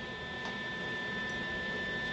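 Steady electrical hum with a few thin, high, steady whining tones and a couple of faint ticks. No welding arc is heard yet.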